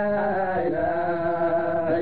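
A voice chanting a religious chant of long, drawn-out 'la' syllables over a steady low hum. The melody slides down to a lower note near the end.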